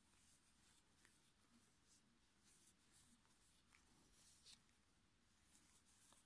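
Near silence, with only a few faint soft ticks and rustles.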